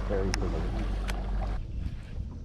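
Low steady hum of a boat motor under quiet talk, cutting off suddenly about one and a half seconds in, with two short clicks.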